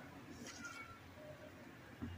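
Very faint short animal calls with sliding pitch, a few about half a second in and one more a little later, over quiet room tone with a low hum.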